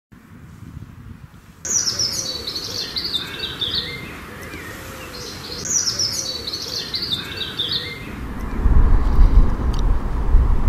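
A songbird singing two descending, warbling phrases a few seconds apart, starting suddenly about a second and a half in, over a light outdoor background. Near the end a louder low rumble comes up.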